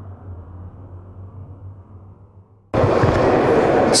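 A faint low steady hum that fades, then, about three quarters of the way through, a sudden jump to a loud, even rushing noise: the open microphone picking up the air of a large sports hall.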